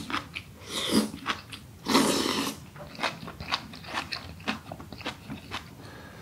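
Eating braised aged kimchi: two wet slurps of about half a second each as long strips are sucked in, then chewing with many short, wet, crunchy clicks.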